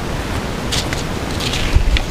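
Steady wind noise buffeting the microphone outdoors, with a couple of short papery rustles as a seed packet is handled.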